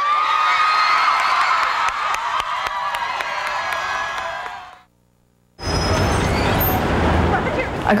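A group of people cheering and shouting together, many voices at once. It cuts off abruptly, and after a brief silence comes steady street traffic noise with a low vehicle rumble.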